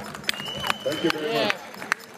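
People talking in a crowd outdoors, with a thin high steady tone for under a second and a few sharp clicks.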